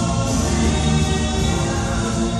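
Background music: choral singing with long held chords.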